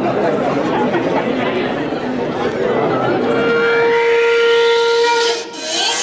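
Crowd chatter in a large hall. About three seconds in, the dance track's recorded intro starts: a held, whistle-like tone with a rising sweep above it. It drops out briefly near the end, just before the song itself comes in.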